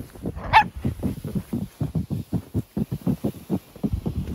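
A small Japanese Chin–Chihuahua mix dog playing in snow: quick, even thumping sounds, about five a second, and one short high squeak about half a second in.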